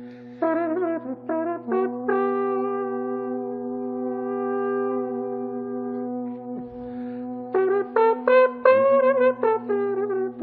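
Male voices singing Georgian polyphony: a low drone held steadily underneath while the upper voices carry a moving melody. The upper parts turn into quick ornamented notes near the end.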